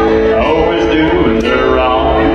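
Country band playing live: electric and acoustic guitars, bass and drums, with a cymbal struck about once a second.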